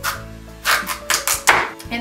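Chef's knife cutting through a kabocha squash onto a wooden cutting board: one chop at the start, then a quick run of about five sharp chops about halfway through.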